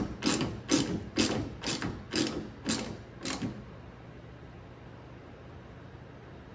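Hand ratchet clicking in short back-and-forth strokes, about two a second, as it drives a self-tapping screw into the plastic of a tail-light mount. The clicking stops about three and a half seconds in, once the screw is snug.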